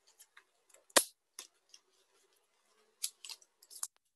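Paper and sticky tape being handled and pressed down: scattered short crackles, with one sharp tap about a second in and a cluster of small crackles near the end.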